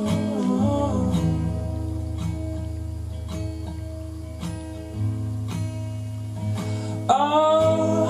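Two acoustic guitars strummed in an instrumental gap of a song: a held sung note dies away within the first second, the guitars carry on alone, and the voices come back in near the end.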